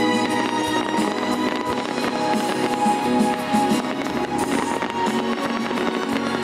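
A fireworks display with shells bursting and crackling repeatedly over steady music.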